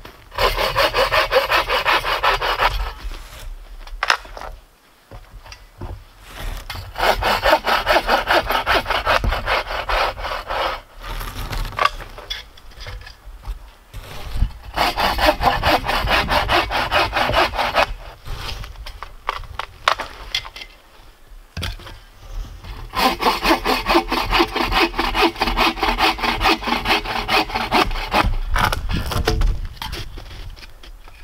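Bow saw cutting through a dry dead branch in four spells of quick back-and-forth strokes, with short pauses between them.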